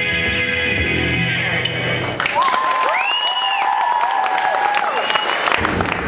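The song's closing music holds for about two seconds and then stops. Audience applause follows, with gliding whoops and whistles rising and falling over the clapping.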